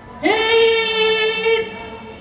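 A woman's singing voice holding one long note, sliding up into it at the start and lasting about a second and a half, from the song playing with the routine.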